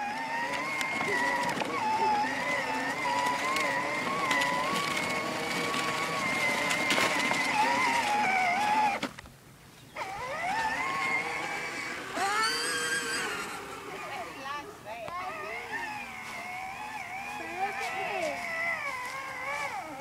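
Battery-powered Kawasaki toy four-wheeler's electric motor and gearbox whining steadily as it drives, the pitch wavering slightly with the ground, cutting out about nine seconds in. After a brief quiet gap, softer wavering tones follow.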